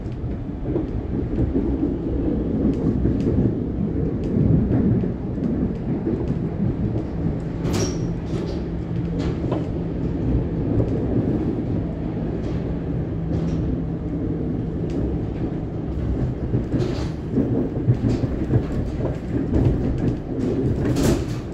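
Siemens Nexas electric train running at speed, heard from inside the carriage: a steady low rumble of wheels on rail with scattered sharp clicks and knocks. A faint steady hum sits under the rumble for several seconds in the middle.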